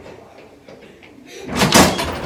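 A door bursting open suddenly, a loud bang about one and a half seconds in.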